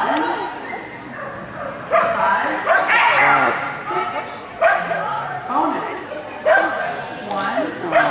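A dog barking repeatedly, in short bursts every second or two.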